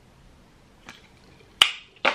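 Two clicks in a quiet room: a faint one just under a second in, then a single sharp, loud click about a second and a half in that dies away quickly.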